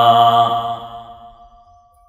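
A man's voice chanting a Quranic verse into a microphone, holding the drawn-out closing note of the verse, which fades out about a second and a half in.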